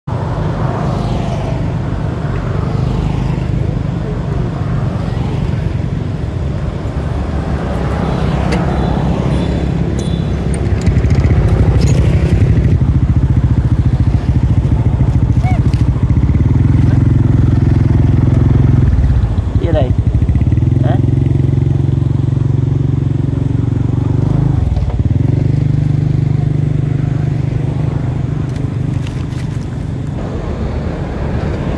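Motorcycle engine idling, a steady low hum. Its pitch dips briefly and comes back up twice in the second half.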